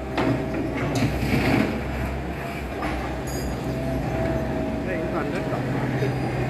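Doosan DX55 wheeled excavator's diesel engine running steadily under load, with a steady hydraulic whine as the boom lifts a full bucket of soil and swings it over the truck bed. A rough rush of soil and rubble sounds in the first two seconds.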